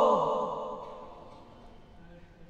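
A man's melodic Quran recitation ending a long held note. The voice glides down in pitch and trails off, fading away over about a second and a half.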